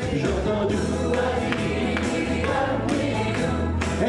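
A pop song sung live through microphones: several voices sing together, a male lead with female backing vocalists, over a band accompaniment with a strong, pulsing bass line.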